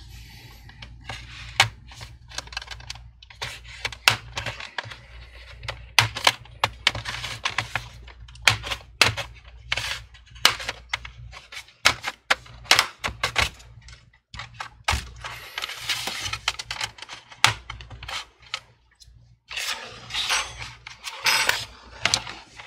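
Plastic pry tool run along the seam of an HP 17 laptop's plastic back cover, the cover's clips snapping loose in irregular sharp clicks, with stretches of plastic scraping, the longest near the end.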